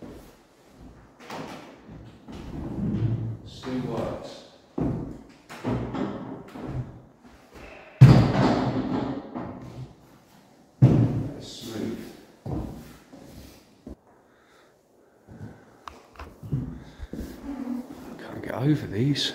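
Tall wooden window shutters being swung and folded shut by hand, with a series of wooden knocks and thuds; the two heaviest thuds come about eight and eleven seconds in.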